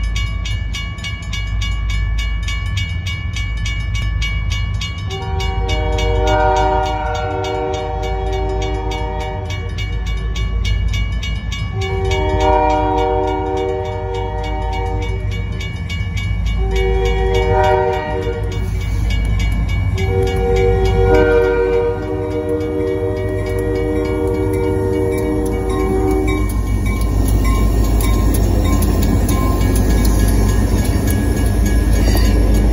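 Huron and Eastern Railway locomotive air horn sounding the grade-crossing signal as the train approaches: two long blasts, a short one, then a final long one. A crossing bell rings steadily throughout, over the low rumble of the locomotive. The rumble grows louder as the locomotive passes near the end.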